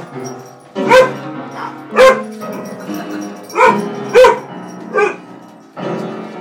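A dog barks about five times in short, sharp barks. Piano notes ring out and sustain between the barks as the keys are struck.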